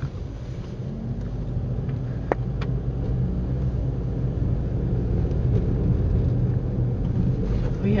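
Inside a moving car: a steady low rumble of engine and tyre noise that grows slowly louder as the car drives along the street. Two short clicks sound about two and a half seconds in.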